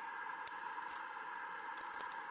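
A faint steady hiss, with a few soft clicks.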